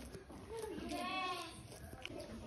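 A sheep bleating once, a wavering call that starts about half a second in and lasts about a second.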